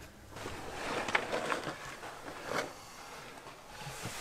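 Irregular rustling and scraping of a person moving through a narrow rock crawl space, clothing brushing and hands and feet shifting on stone, with a few light knocks.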